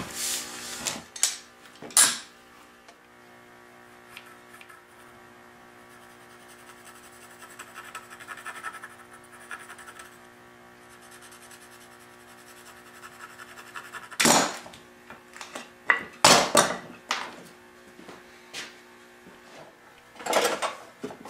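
Wooden workpieces and tools handled on a workbench: a few sharp knocks at the start and a cluster of knocks and clatters near the end. In between is a quiet stretch with a steady low hum and a faint scratching of a pencil marking wood.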